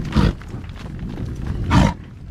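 American bison grunting twice close by, the second grunt sliding downward, over the low shuffle of the herd walking past.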